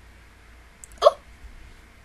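A single short, sharp hiccup from a person close to the microphone, about a second in, just after a faint click.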